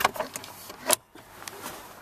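A few short clicks and knocks as fingers tap the hard plastic interior trim of a minivan dash and the handheld camera is handled. The strongest knock falls just before the one-second mark, followed by a faint steady hiss.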